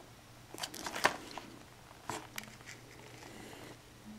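Faint handling sounds of a Blu-ray case in a cardboard slipcover being turned over in the hands: a few light clicks and rustles in the first second or so, another click about two seconds in, then a soft rustle.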